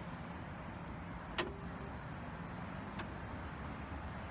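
Two sharp clicks about a second and a half apart, the first louder with a brief metallic ring: the Mitsubishi Pajero's bonnet latch being released and the bonnet raised. A steady low hum runs underneath.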